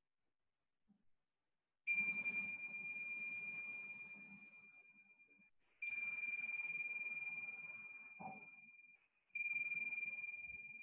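A pair of tingsha cymbals struck three times, about four seconds apart. Each strike gives a single clear, high ring that slowly fades.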